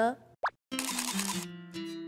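A short rising pop sound effect about half a second in, followed by a brief music sting with held notes: a programme transition jingle.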